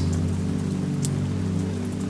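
Steady rain-like hiss over a low sustained drone of several held tones, with one faint tick about a second in.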